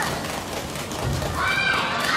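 High-pitched voices calling out in a large, echoing sports hall. The drawn-out calls fade early on and come back about one and a half seconds in.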